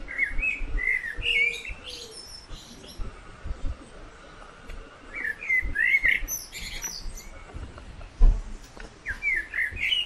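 Songbird singing outdoors in short bursts of quick chirping notes: one at the start, one midway and one near the end. There is low handling rumble throughout and a single dull thump just after eight seconds.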